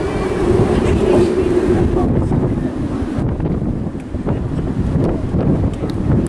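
Strong wind buffeting the microphone, a gusting low rumble that rises and falls, with a faint steady hum in the first second or so.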